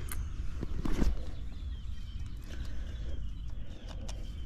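Outdoor AC condensing unit running during a refrigerant pump-down, a steady low hum. Two sharp metallic clicks about a second apart near the start come from a tool at the service valve, with faint bird chirps over the hum.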